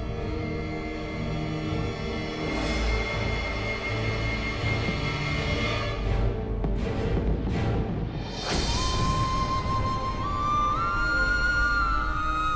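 Dramatic background score: sustained low tones with several whooshing sweeps in the middle, then a high, held melodic line enters about two-thirds of the way through.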